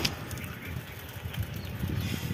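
Wind buffeting a phone's microphone while riding a bicycle: a low, uneven rumble.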